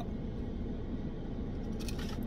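Steady low background noise inside a car cabin, with faint chewing of a bite of glazed cornbread donut and a few soft mouth clicks near the end.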